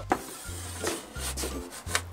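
Chalk scraping on a chalkboard in several short strokes as letters are written and underlined.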